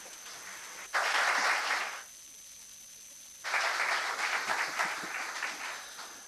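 Audience applauding in two stretches: the clapping starts abruptly about a second in and cuts off at two seconds, then resumes at about three and a half seconds and fades out near the end.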